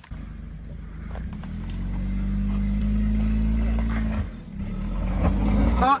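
Honda Stepwgn minivan's engine working hard on a steep climb, growing louder over a few seconds, easing off sharply about four seconds in, then building again.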